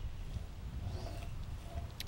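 Quiet outdoor background: a steady low rumble with a few faint, indistinct sounds above it, and no putt struck.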